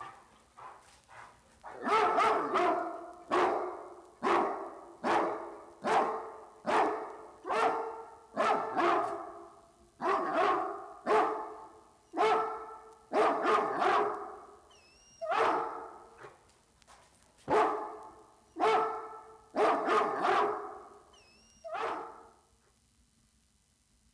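Dogs barking: a few small barks at first, then loud, repeated barks about once a second from a couple of seconds in.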